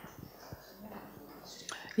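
Faint, low voices murmuring, whisper-like, in a quiet hall, with no clear words.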